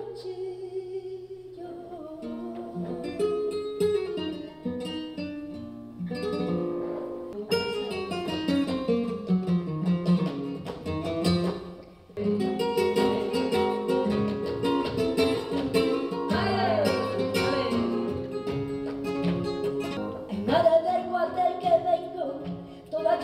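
Flamenco acoustic guitar playing, with a falling run of notes a little before halfway. A woman's flamenco singing comes in near the end.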